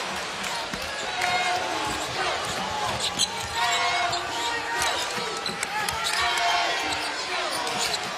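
A basketball dribbled on a hardwood court during live play, heard as repeated short bounces. Short high squeaks sound over a steady arena crowd noise.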